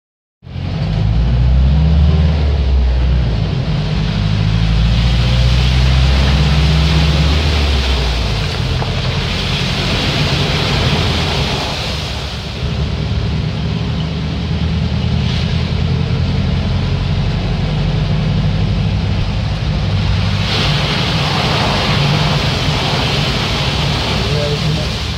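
Heard from inside the cab: a vehicle's engine running steadily while heavy rain beats on the windscreen and water sprays up from the wheels driving through flood water. The engine's low note changes about eight seconds in, and the rush of water swells twice, with muddy water breaking over the windscreen near the end.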